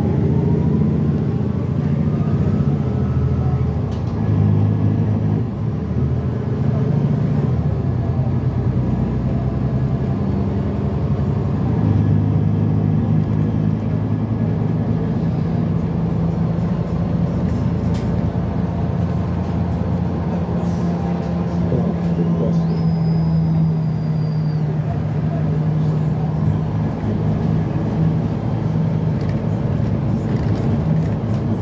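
Inside a New Flyer XD40 diesel transit bus under way: steady engine and drivetrain drone with road noise. A whine rises in pitch over the first few seconds.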